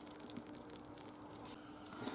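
Quiet room tone: a faint steady hum under low hiss, with one soft tap about half a second in.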